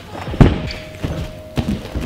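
A heavy thud about half a second in, then lighter thuds of feet landing and running on padded gym mats and floor, as a dash vault over a crash mat is done.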